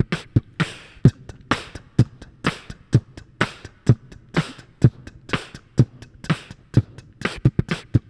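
Beatboxing into a handheld microphone over a looped beatboxed drum pattern on a Boss RC-300 loop station: a steady beat of kicks about twice a second and snares between them, with quick mouth hi-hat ticks layered in as a new loop track is recorded.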